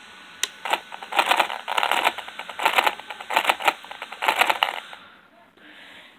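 Brushless RC car motor clicking and stuttering in short bursts as throttle is applied, without spinning up; the owner suspects the motor is fried.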